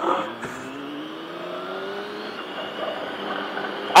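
Motorcycle engine accelerating hard, its note climbing steadily for about two seconds and then carrying on more faintly, under steady wind rush on the helmet microphone.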